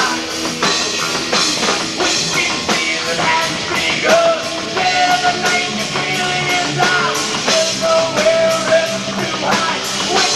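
Live rock band playing a song: electric guitars, bass guitar and a drum kit, loud and continuous, with a lead line of held, bending notes over steady drum beats.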